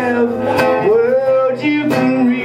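A man singing while strumming an acoustic guitar. One sung note is held for most of a second in the middle, over steady strummed chords.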